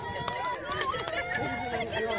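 Several young children's voices overlapping, chattering and calling out, with no one voice standing out.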